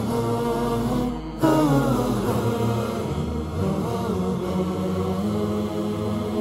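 Chanted vocal music: a voice singing a slow, gliding melody over a steady low drone.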